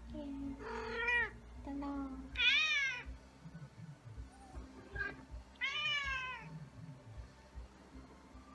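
Domestic tabby cat meowing three times, drawn-out rising-and-falling meows; the second, about two and a half seconds in, is the loudest.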